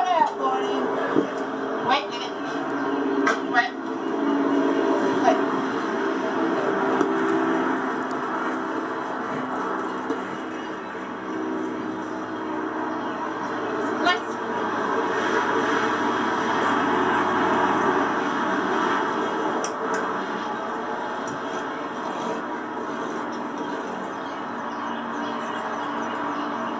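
Muffled, indistinct television audio playing in a room, heard through a phone's microphone, with a few faint clicks.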